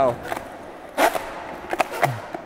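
Eight-wheeled skateboard, doubled wheels on each truck, rolling on smooth concrete with a steady low rumble. One sharp knock comes about a second in, and a couple of quick clicks come near the end.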